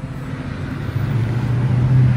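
A motor vehicle engine running with a steady low hum, which grows louder about a second in.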